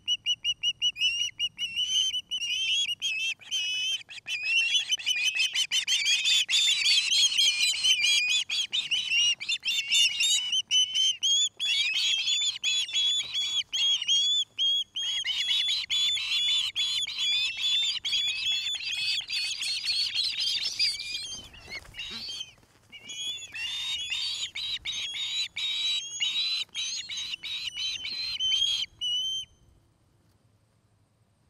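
Juvenile ospreys calling: a long, rapid run of short, high chirps, several a second, with a brief pause about two-thirds of the way through, stopping just before the end.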